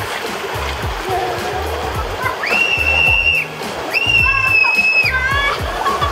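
Water rushing under an inflatable raft tube sliding down a water slide, with two long high-pitched screams from the riders midway through. Background music with a steady beat runs underneath.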